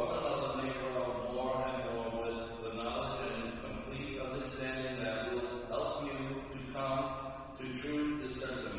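A voice chanting slowly, holding each note for about a second, over a steady low hum.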